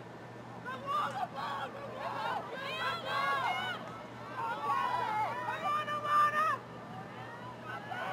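Several shouting voices calling out across a lacrosse field during play, high-pitched and unclear, over a steady low hum.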